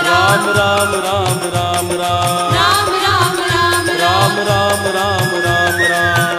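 Sikh devotional song (shabad) music: a melodic lead with sliding, ornamented notes over a steady drum beat of about two strokes a second.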